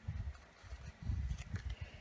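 Hands handling a sticker sheet and pressing stickers onto paper planner pages: soft rubbing and dull thumps in two bursts, one at the start and one about a second in, with a few light clicks.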